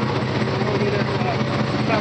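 Turbocharged Nissan Titan pickup's 5.6-litre V8 idling steadily.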